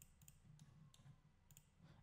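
Near silence: faint room tone with a few soft, sharp clicks from a computer mouse being worked.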